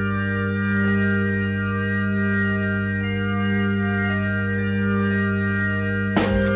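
Organ-led intro of a late-1960s pop song: one full chord held steady, with a few slow melody notes changing on top, and no drums yet.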